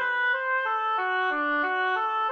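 Synthesized score-playback instrument playing the accompaniment line alone: a single melody of short notes, one at a time, moving up and down in steps while the choir parts rest.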